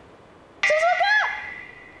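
A woman's raised voice calling out a name, masked by a steady high-pitched censor bleep that starts about half a second in and fades away toward the end.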